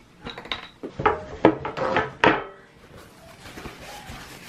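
A plastic bowl knocking and clattering against a table, a quick run of sharp knocks over about two seconds that stops about two and a half seconds in.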